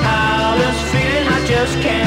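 Mid-1960s British beat-group rock and roll recording in mono: a full band playing with a steady beat.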